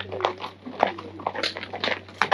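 Hooves of walking horses striking a stony dirt track: a few uneven clops about every half second, over a steady low hum.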